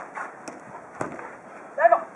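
A futsal ball kicked on an artificial-turf court, a sharp thud about halfway through with a few lighter knocks around it. A player's brief shout near the end.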